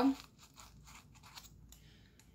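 Faint scratching and rustling of a paper coffee filter being pressed down inside a small metal pail, a few soft scrapes in the first second and a half.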